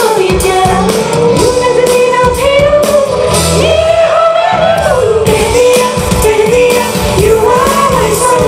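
A live pop song: two female vocalists singing together into microphones, backed by a band with bass guitar, drums and hand percussion. It is loud and continuous, with held and gliding sung notes over a steady beat.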